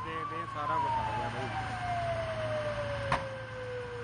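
Fire engine siren winding down: one tone rises briefly, then falls slowly and steadily in pitch. Faint voices can be heard under it at the start, and there is a single sharp click about three seconds in.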